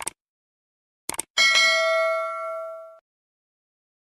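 A short click, then two quick clicks, then a bell-like ding with several ringing overtones. The ding sounds for about a second and a half and cuts off suddenly.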